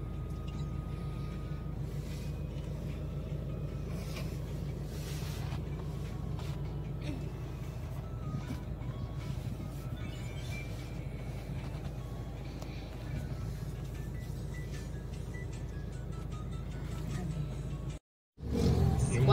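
Christian music playing at low volume from the car stereo over the steady low rumble of the Nissan Navara's 2.5-litre turbodiesel idling at about 1,000 rpm, heard inside the cabin.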